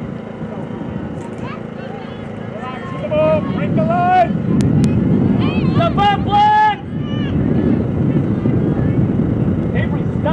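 Shouting voices of players and sideline spectators at an outdoor soccer match, overlapping calls that swell into several loud, drawn-out shouts in the middle. A steady low noise runs underneath.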